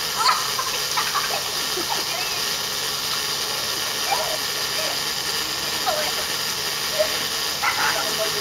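Garden hose with a thumb pressed over its end, water spraying out in a steady hiss as the narrowed opening speeds up the flow. Short shouts and squeals from children come and go over it.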